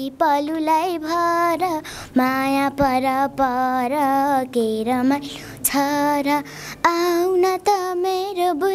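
A young girl singing a Nepali dohori folk song, held notes with a wavering pitch, in short phrases with brief breaks between them.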